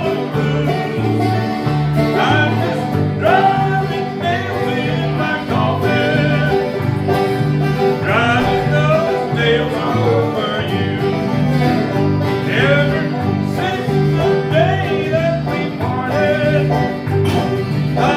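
Live bluegrass band playing: banjo, mandolin and acoustic guitars picking over a steady, alternating bass beat.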